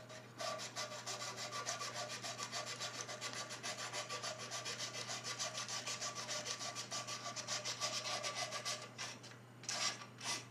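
Fine wet-and-dry abrasive paper rubbed rapidly back and forth on the burner's flame rod of a paraffin heater, in quick rhythmic strokes of about seven a second, scouring deposits off the rod. The strokes pause briefly near the end, then start again.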